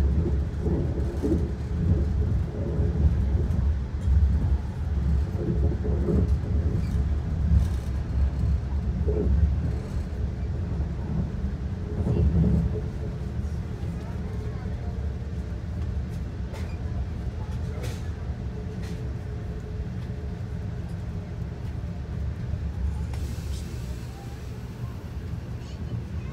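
Amtrak passenger train heard from inside the coach while moving at speed: a continuous low rumble and rattle of wheels on the rails. It is louder and rougher for the first dozen seconds, then settles into a steadier, quieter run with a few sharp clicks.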